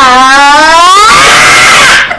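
A child screaming: one long, very loud scream that rises in pitch and turns rough and distorted in its second half before cutting off.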